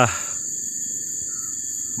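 Steady high-pitched drone of insects in the surrounding vegetation, unchanging, over a low outdoor background.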